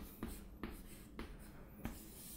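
Chalk writing on a chalkboard: faint scratching strokes with a few light taps as figures are written.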